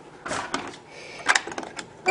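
A few light clicks and knocks, three or so in two seconds, over faint room noise.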